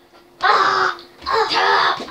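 A child's two loud wordless shouts, the second lasting most of a second.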